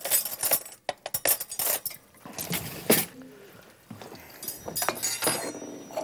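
Metal cutlery clinking and clattering as knives and forks are taken from a drawer and handled, with a quick run of clinks in the first few seconds and a brief metallic ring near the end.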